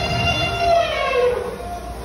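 Animatronic elephant's recorded trumpeting call played through its display speakers: one long, brassy call that slides down in pitch and dies away about a second and a half in.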